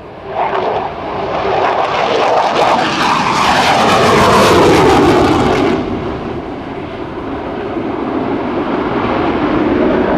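McDonnell Douglas F-15C Eagle's twin Pratt & Whitney F100 turbofans in afterburner on a low pass. The jet roar builds fast about half a second in, crackles loudest in the middle with its pitch falling as it goes by, then the high crackle drops away suddenly about six seconds in. A lower rumble is left, swelling again near the end.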